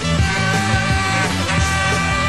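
Live rock band playing over a steady drum beat and bass line with no vocals, heard from a direct soundboard feed.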